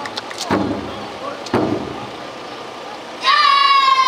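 A large taiko drum on the float is struck three times, about a second apart, each a deep thud. About three seconds in, a loud, high, long shout begins and falls slightly in pitch as it is held.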